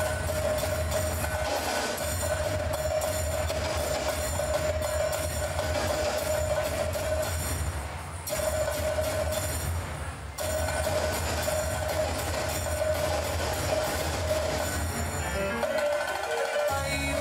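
Dance music with a steady held drone under fast, rhythmic percussion; it dips briefly about eight and again about ten seconds in.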